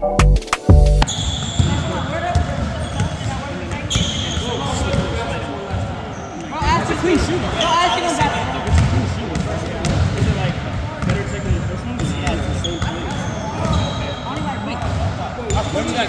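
Basketballs bouncing on a hardwood gym court, a steady run of thuds as several players dribble and shoot, in a large hall. Voices talk in the background.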